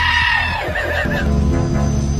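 A dog howls in a high, wavering voice for about the first half-second. From about a second in, music with a heavy bass line plays.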